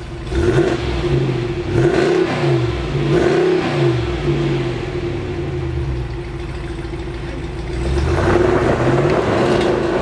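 2020 Ram 2500 Power Wagon's 6.4-litre HEMI V8 blipped three times while standing, each rev rising and falling in pitch, then settling before the truck accelerates away about eight seconds in, louder, with its tyres on gravel.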